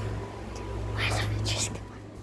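Whispering, with two short hissy sounds about a second in, over a steady low hum that fades out near the end.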